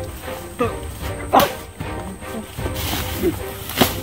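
Background music, with two short sharp sounds over it: the loudest about a second and a half in, another near the end.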